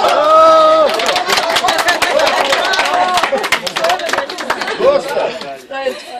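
A lively group of people talking and laughing over one another, opening with one loud, long held shout, with a quick run of sharp clicks through the middle.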